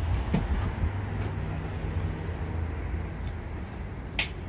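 Street traffic: a steady low engine rumble with a constant low hum.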